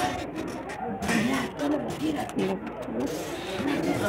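Indistinct chatter of several people's voices, with no words made out.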